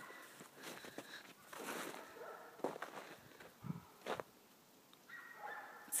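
Faint, irregular footsteps in snow.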